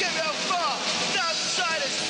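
Several voices talking and calling out over one another at once, with no single voice clear.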